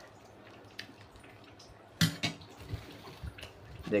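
A metal ladle clinking against dishes as rendang gravy is spooned over rice: a sharp clink about two seconds in, then a few lighter knocks, after a quieter stretch with faint ticks.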